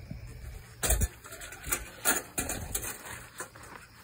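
Wire-mesh live trap rattling and clinking as it is handled, with a few sharp metal knocks: one about a second in and several more two to three seconds in.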